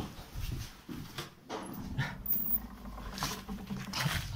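Footsteps going down a staircase, a few separate knocks, with rustling from clothing and the handheld camera, and a faint steady low hum under them.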